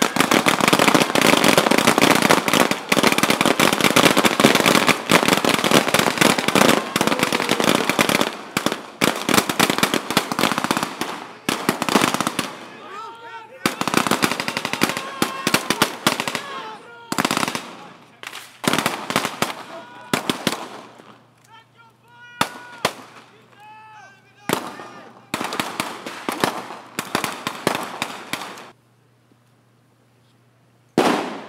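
Small-arms fire from a section of marines fighting through an enemy position: heavy, continuous rapid shots for about the first twelve seconds, then shorter bursts with shouting voices between them, stopping a little before the end.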